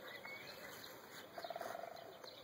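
Faint bird chirps, with a short rapid trill about one and a half seconds in.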